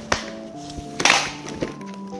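Two sharp clicks about a second apart as the Bugaboo Donkey 5 stroller's seat release buttons are pressed and the seat unlatches from the frame, over background music.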